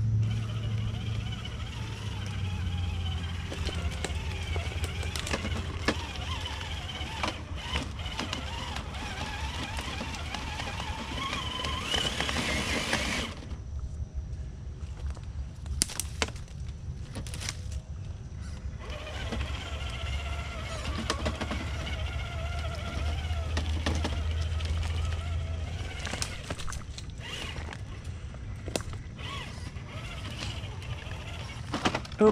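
Traxxas TRX-4 RC crawler on Traxx tracks crawling over rocks: its electric motor and gears whine, rising and falling with the throttle. The whine stops about 13 s in, leaving scattered clicks and knocks of the tracks on rock. It resumes about 19 s in and fades again about 26 s in.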